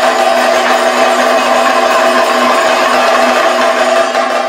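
Kathakali percussion ensemble of chenda and maddalam drums played in a fast, unbroken roll, making a loud, dense, steady din.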